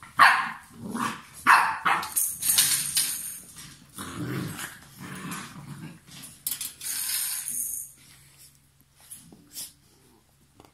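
Seven-week-old puppies play-fighting, with short yaps and growls that come thick and loud in the first half and thin out near the end, mixed with scratchy scuffling.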